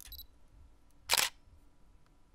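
A single camera shutter click sound effect, short and sharp, about a second in.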